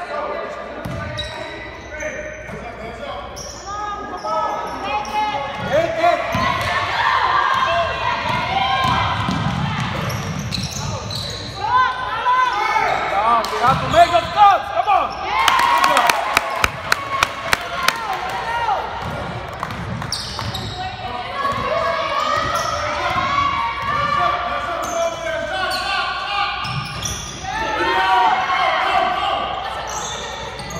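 Basketball game in a gym: the ball bouncing on the hardwood floor while players and spectators call out, echoing in the large hall. A little past halfway comes a quick run of sharp knocks, about three a second.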